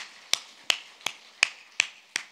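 One person clapping hands close to a microphone: six sharp, even claps, a little under three a second.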